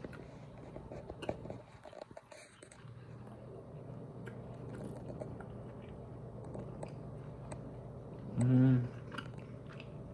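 A person chewing a piece of smoked salmon close to the microphone, with small wet mouth clicks. Near the end comes a short hummed "mm".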